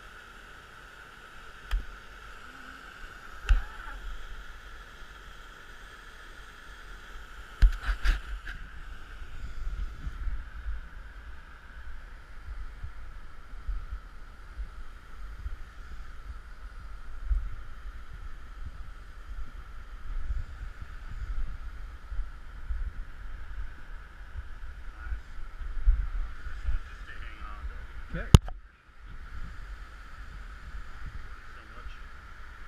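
Flash-flood runoff pouring over a sandstone pour-off as a steady rush of water, under low rumbling wind and handling noise on a helmet camera, with several sharp knocks.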